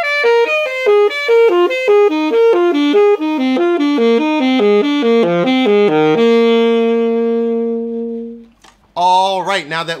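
Alto saxophone playing a fast run of notes from a triad pair of F major and G major triads, played backwards so the line steps downward, ending on one long held note that fades out about eight and a half seconds in.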